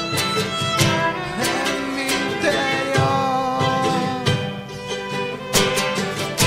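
Live instrumental passage: an acoustic guitar is strummed in a steady rhythm while a violin plays a melody over it, with long held, sliding notes in the middle.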